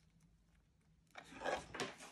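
Soft rustling and rubbing as hands stretch and press fabric onto a small round pendant blank while hot-gluing it, starting about a second in, with a few light ticks.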